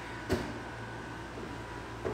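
A single soft knock about a third of a second in, over a faint steady hum.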